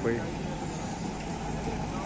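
Steady open-air background noise of a street-food market, an even low rumble and hiss with no distinct events, after one spoken word at the very start.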